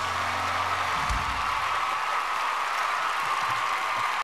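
Studio audience applauding and cheering as a song ends, over the last held chord of the band, which stops about a second in.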